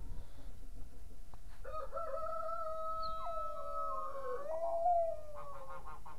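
A long, drawn-out animal call starting about a quarter of the way in, held at one pitch for a couple of seconds, then wavering down and up before dying away near the end.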